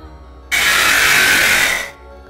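A loud burst of harsh hissing noise starts abruptly about half a second in, lasts just over a second and dies away near the end, over a faint steady music bed.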